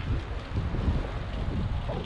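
Wind buffeting the camera's microphone: a steady rumbling hiss, heaviest in the low end.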